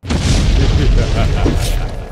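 A loud cinematic boom sound effect from a show's transition sting. It hits suddenly with a deep rumble and dies away over about two seconds.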